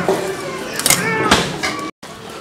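Snakehead fish scraped against the edge of a boti blade to strip its scales, in a few short scraping strokes. The sound cuts off suddenly just before the end.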